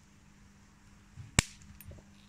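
A single sharp pop about one and a half seconds in: a miniature fluorescent tube bursting in a small explosion under about 800 amps from a microwave-oven-transformer metal melter. A short dull thump comes just before it and a little crackle after it.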